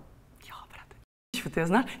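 Faint breathy sound, then a brief dropout to silence, then a man starts speaking loudly.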